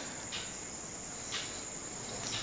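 Faint, steady background noise in a pause with no speech, with two soft brief sounds, one about a third of a second in and one near the middle.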